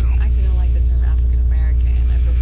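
Loud, steady low electrical hum with a ladder of evenly spaced overtones, unchanged throughout, with faint interview speech above it.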